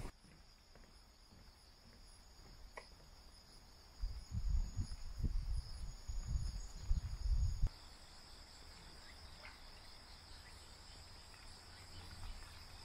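Steady high-pitched drone of insects in the trees, with a second thin, higher tone that stops a little past halfway through. Low rumbling bursts, the loudest sounds here, come and go from about four seconds in until about seven and a half seconds.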